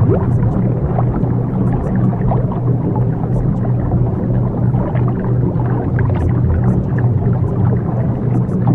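Subliminal audio bed: a steady low drone of held tones with a dense, restless layer above it, the kind of mix that buries sped-up affirmations under a delta-wave tone.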